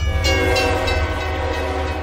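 A horn-like chord of several steady tones, held for about two seconds.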